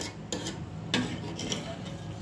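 A metal spoon stirring a thin curry in an aluminium pressure-cooker pot, with two sharp clinks against the pot, one at the start and one about a second in.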